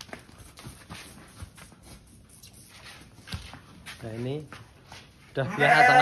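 A sheep's hooves scuffing and clicking on a concrete floor as it is pulled on a rope, with one short, wavering bleat about four seconds in. A man starts talking near the end.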